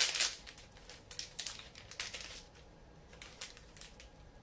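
A foil trading pack being torn open and its wrapper crinkled. The crackling is loudest at the start and thins out to a few small crinkles by about two and a half seconds in.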